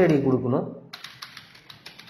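Typing on a computer keyboard: a quick run of keystrokes entering an email address, after a drawn-out spoken "eh" at the start.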